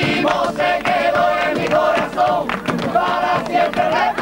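A group of men singing a folk song together in unison, with a sharp percussive beat keeping time underneath.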